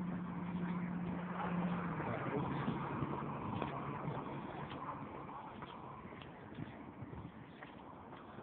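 A motor vehicle passing on the street: a steady engine hum that drops in pitch about two seconds in, with road noise that swells and then fades away.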